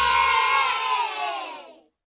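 A group of children cheering together in one drawn-out shout that falls slightly in pitch and fades away near the end.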